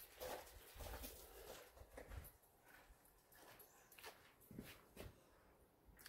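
Near silence, with faint scattered ticks and brief rustles.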